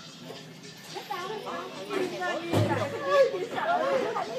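Voices of a small child and adults over music playing in the background, with a low thump about two and a half seconds in.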